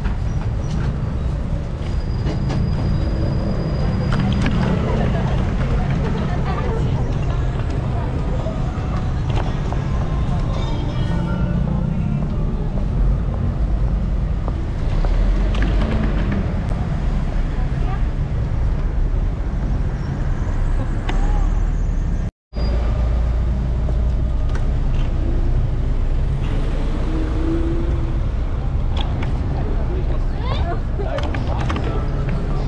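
Busy city street ambience at night: passers-by talking amid the steady noise of passing cars and buses. The sound cuts out completely for a moment about two-thirds of the way through.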